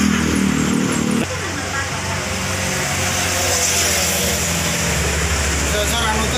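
Motor vehicle engines running by a roadside food stall, with background voices. A low engine hum cuts off abruptly about a second in, and a steady low drone carries on.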